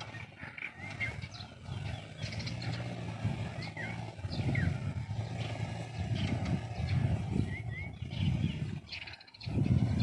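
Small 125cc engine of a homemade mini jeep running as it drives closer, its drone growing a little louder, with birds chirping over it. The engine sound cuts off shortly before the end.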